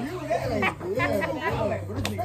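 Voices talking over one another with laughter: only chatter and speech.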